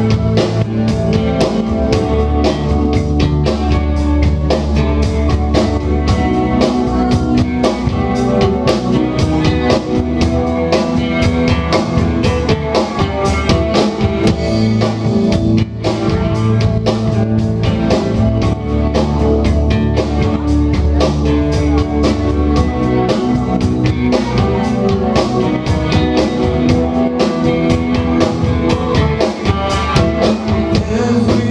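A rock band playing live at full volume: electric guitar, bass guitar, drum kit with steady beats, and an electric keyboard.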